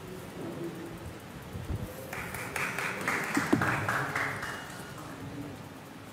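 Audience applause starting about two seconds in and lasting about three seconds, with two low thumps, the louder one in the middle of the clapping.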